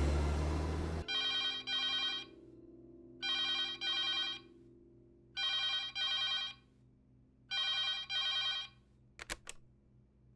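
A telephone ringing in a double-ring pattern, ring-ring then a pause, four times over, after a music cue cuts off about a second in. Two short clicks follow near the end.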